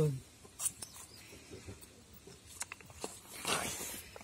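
Faint handling noise of a plastic yogurt cup on wooden boards: a few small clicks, then a short rustling scrape about three and a half seconds in as the cup is tipped over onto its side.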